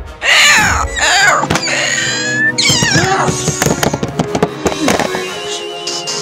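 Velociraptor screech sound effects: several shrill, wavering calls in the first three seconds, over background music. A run of sharp clicks follows.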